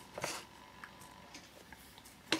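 Quiet handling noise of AA batteries being moved on a desk mat: a soft rustle at the start and a light click just under a second in.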